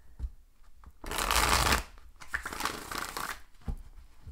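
A deck of tarot cards being shuffled by hand, in two bursts: a loud one about a second in, then a longer, softer one.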